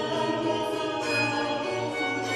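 Baroque chamber music on period instruments: two violins playing sustained lines over viola da gamba and a plucked lute-like instrument, with a voice singing.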